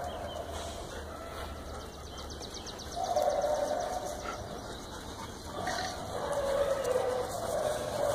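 Two long, drawn-out animal calls, the first about three seconds in and a longer, slightly falling one from about six seconds.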